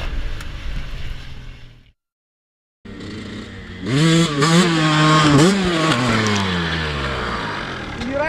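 Music fades out over the first two seconds, then after a brief silence a dirt bike's engine revs, its pitch rising and falling several times before a long, steady drop near the end.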